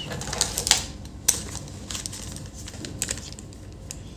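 Scattered small clicks and taps as a handheld digital multimeter and its test leads are handled on a workbench, with one sharper click about a second in.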